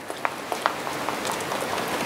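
A spoon stirring a thick mixture of honey, oils and melted shea butter in a small bowl: a steady hiss with a few light clicks of the spoon against the bowl.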